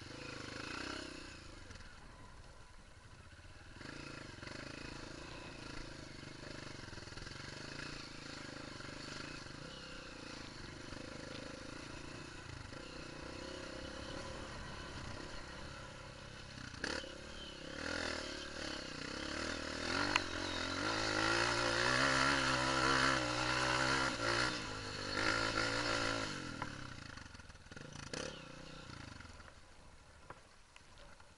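Honda CRF230 dirt bike's single-cylinder four-stroke engine running while riding a rough trail, with occasional knocks from the bike over the ground. About two-thirds of the way in, the engine is revved harder and runs louder for several seconds, then eases off.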